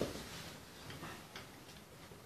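A few faint, scattered clicks of laptop keys being typed on.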